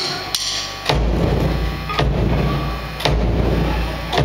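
Drumsticks clicked together in an even count-in, about two clicks a second, then just under a second in a live rock band comes in loud: bass guitar and drum kit, with heavy accented hits about once a second.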